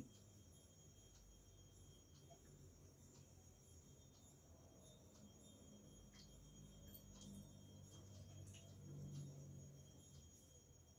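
Near silence: faint room tone with a thin, steady high-pitched whine and faint low tones that grow slightly louder in the second half.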